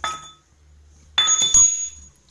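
Loose steel rings of a broken washing-machine drum bearing clinking and ringing as they are handled. There is a short ringing clink at the start, then a louder one lasting most of a second about a second in. The bearing has fallen apart, the cause of the machine's noisy running.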